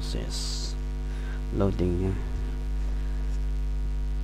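Steady electrical mains hum, a low buzz with a ladder of evenly spaced overtones, carried on the microphone recording. There is a brief hiss near the start and a short wordless vocal sound about halfway through.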